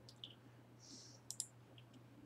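Near silence with a few faint clicks at a computer as a web page is brought up, two of them close together a little past a second in, over a low steady hum.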